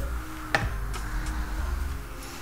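Hands working a rubber timing belt onto an engine's toothed sprockets and pulleys: one sharp click about half a second in and a few faint handling clicks, over a low steady hum.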